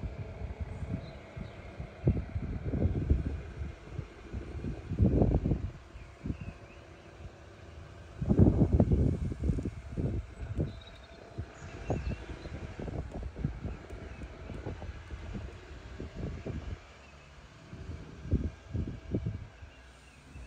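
Wind buffeting the microphone in irregular low rumbling gusts, strongest about two, five and eight to ten seconds in.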